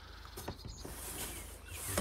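Clear plastic window panel sliding along a wooden frame: a light scraping rub with a small click about half a second in and a knock at the end.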